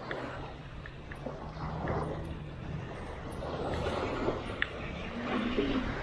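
Beach ambience: a steady noise of wind and surf with a faint low drone underneath and a few light clicks.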